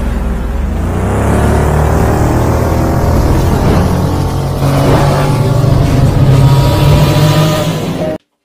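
Loud, continuous engine-revving sound effect, its pitch climbing in long glides over a deep steady hum, cutting off suddenly at the end.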